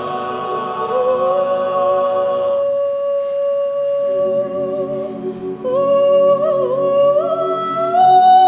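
A cappella mixed chorus: the full held chord fades out a couple of seconds in, leaving a woman soloist holding one long note. About four seconds in the chorus comes back in with a low hummed chord, and the soloist moves into a sliding melody line above it.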